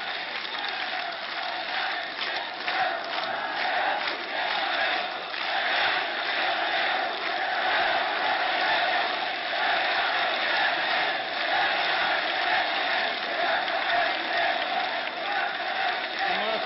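Large open-air crowd of many voices shouting and chanting, mixed with some applause.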